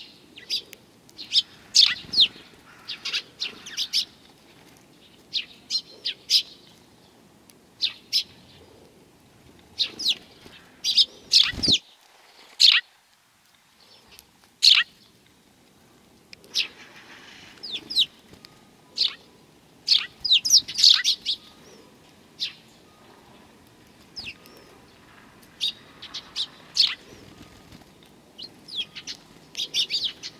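A flock of Eurasian tree sparrows chirping: short, sharp, high chirps come irregularly, sometimes in quick clusters, with one thump about twelve seconds in.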